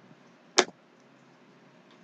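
A single short, sharp crackle from a plastic drink bottle being picked up and handled, about half a second in; otherwise near silence.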